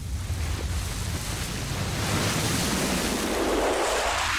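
Whoosh sound effect for a logo reveal: a rushing noise that swells steadily louder over a low drone.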